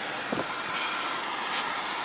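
Steady background din of a noisy outdoor area with traffic, with a faint click about a third of a second in.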